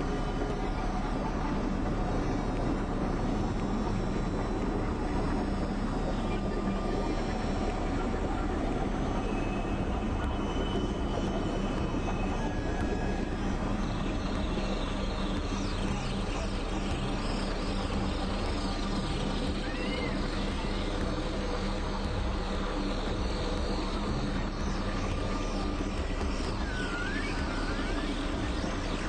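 Experimental electronic drone music: a dense, steady wash of synthesizer noise and held tones. From about halfway, thin high sweeping chirps appear above the drone.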